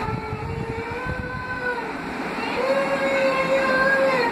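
A voice singing long held notes that glide slowly up and down in pitch, growing louder in the second half.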